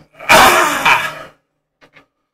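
A loud, rough vocal cry lasting about a second, cut off abruptly, followed by two faint clicks.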